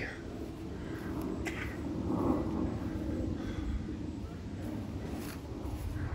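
Steady low outdoor background rumble with a few faint soft knocks, as someone walks across grass carrying the recording phone.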